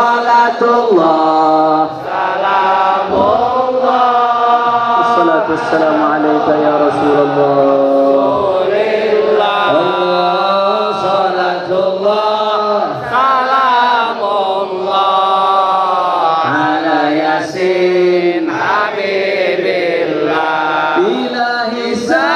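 Congregation chanting a salawat together, led over a microphone, in long held notes that glide from pitch to pitch without a break.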